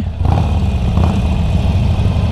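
Harley-Davidson Forty-Eight Sportster's air-cooled V-twin running at low speed through a Screaming Eagle exhaust, a steady low engine note.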